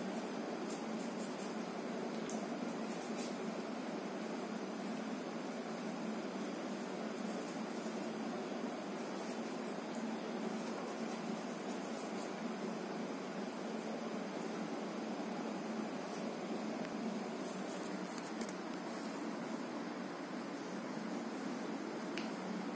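Steady, even room noise with no words, with faint scattered clicks throughout.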